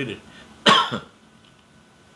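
A man coughs once, short and sharp, a little under a second in.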